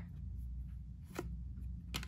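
Glossy trading cards being flipped through by hand, with a light card snap about a second in and another near the end, over a faint low hum.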